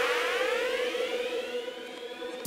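Synthesized intro sound effect: a held electronic tone with a fan of rising sweeps above it, fading down.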